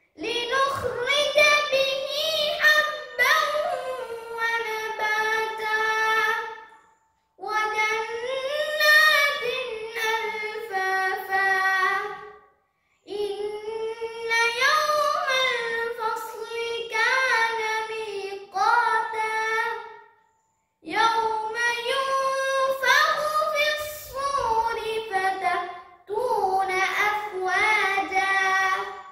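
A boy reciting the Quran in melodic, ornamented tajweed (qirath), in long held phrases with short pauses for breath about every five to seven seconds.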